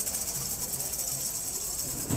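Tambourines shaken continuously, giving a steady high jingling shimmer, over a faint low beat repeating a few times a second.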